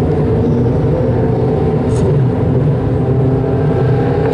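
Engines of a pack of Dwarf race cars running steadily as they circle a dirt oval, heard from the grandstand as a constant overlapping drone.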